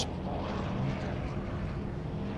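Engines of two Subaru Impreza rallycross cars running hard as they race past, a steady flat-four engine drone.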